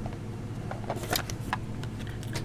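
Cardboard gift box being handled and its lid lifted off, giving a few short taps and scrapes about a second in, over a steady low hum.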